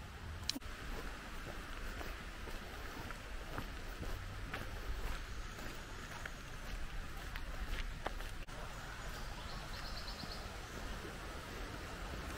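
Footsteps on a dirt woodland trail over steady outdoor background noise with a low rumble on the microphone. A few seconds before the end comes a short, quick series of high chirps.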